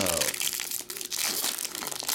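Foil trading-card pack wrapper crinkling and tearing as it is ripped open by hand, a dense run of sharp crackles.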